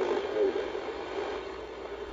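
Motorola Sapphire IX car radio's speaker playing a station faintly under a steady hiss of static. The noise is interference from the ESP32 Bluetooth board mounted close to the radio's RF circuit, leaving a poor signal-to-noise ratio.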